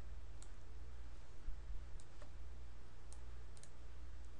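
A computer mouse clicking a few times, light and irregular, over a steady low hum.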